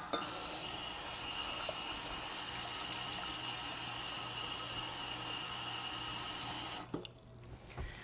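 Kitchen faucet running cold water into a stainless steel saucepan of potato pieces, topping it up so they are covered: a steady rush of water that is shut off suddenly about a second before the end.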